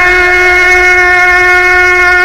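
A male Quran reciter's voice holding one long note at a steady pitch in melodic tajweed recitation, the vowel drawn out without a break.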